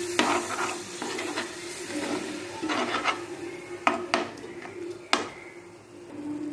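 Slotted metal spatula stirring and scraping a sizzling onion-tomato masala in a frying pan, with a few sharp knocks of the spatula against the pan, the loudest about four and five seconds in.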